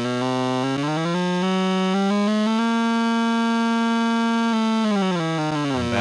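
Click tracks from a Synthstrom Deluge and a Polyend Tracker, locked together by MIDI clock, running at an extreme tempo so the clicks blur into one continuous pitched tone. The pitch rises over the first couple of seconds as the tempo is turned up, holds steady, then falls near the end as the tempo is brought back down; the Tracker keeps up with every click of the external clock.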